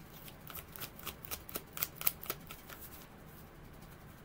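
A deck of oracle cards being shuffled by hand: a quick run of light card slaps and clicks for about three seconds, then quieter.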